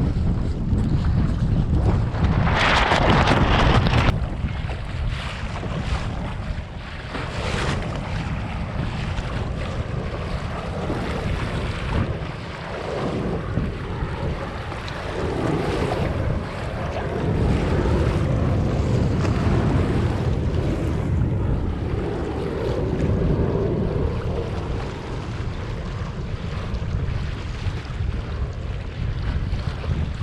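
Wind buffeting the microphone over water sloshing and splashing against a sailing kayak's hull in choppy sea. A louder rush of water comes about three seconds in and lasts a second or so.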